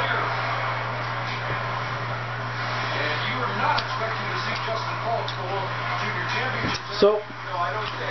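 Background talk, not from anyone on camera, over a steady low hum, with a short sharp knock about seven seconds in.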